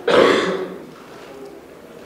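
A man clearing his throat once, a short rough burst about half a second long, followed by low room tone.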